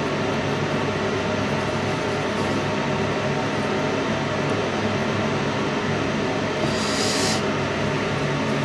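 Steady electrical hum with an even rushing noise behind it, unchanging throughout, and one short high hiss about seven seconds in.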